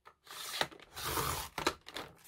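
Sliding paper trimmer's cutting head drawn along its rail, slicing through a magazine page: two noisy passes, each ending in a sharp click.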